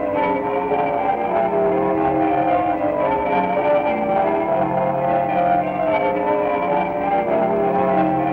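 Bells of St David's Cathedral tower ringing a continuous peal, many overlapping tones changing about every half second.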